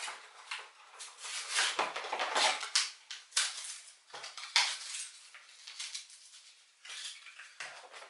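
Plastic reptile-terrarium accessories and their packaging being handled and unwrapped: an irregular run of crinkles, light clatters and sharp clicks.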